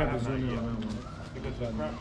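Indistinct voices of several people talking, with no clear words.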